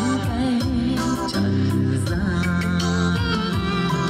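A song with a singing voice and instrumental backing, played from a cassette tape on a Pioneer cassette deck.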